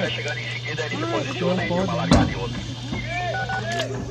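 Several people talking at once over a steady low hum, with a single sharp knock about two seconds in.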